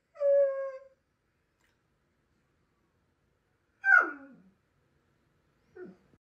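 A borzoi's vocal calls. First comes a short, level-pitched howl-like call. About four seconds in there is a longer call that slides down steeply in pitch, and near the end a brief falling call.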